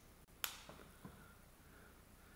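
Small plastic tube of probe cleaner handled and put down on a table: one sharp click about half a second in, then a couple of faint taps.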